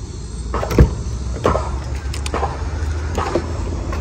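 Car door being opened: a sharp click of the handle and latch about a second in, then a few softer knocks, over a steady low rumble.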